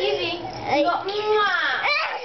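A young child's high-pitched voice squealing in drawn-out, sing-song sounds that swoop up and down, with a longer held squeal in the second half.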